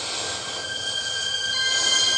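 High-pitched squealing sound effect from a TV's speaker, growing steadily louder. A hissing rush turns into several shrill steady tones near the end.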